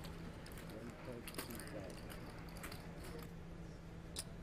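Faint room background of a poker tournament table: distant murmuring voices, a steady low hum and scattered light clicks.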